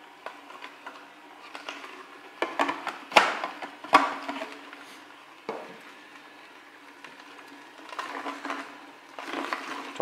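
Vertical slow juicer running with a steady low hum as its auger crushes pieces of fresh turmeric root, giving irregular cracking and snapping. Two sharp cracks stand out about three and four seconds in.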